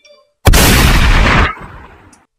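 A loud explosion-like blast sound effect, triggered from a tabletop sound pad as a segment transition. It hits suddenly about half a second in, holds for about a second, then dies away.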